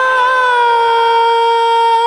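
A woman singing one long, high held note in a gospel song, steady in pitch.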